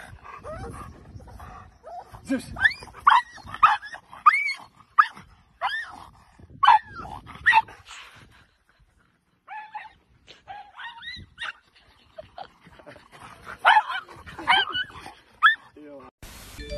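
A dog barking in runs of short, high-pitched yips, with a brief pause about halfway through.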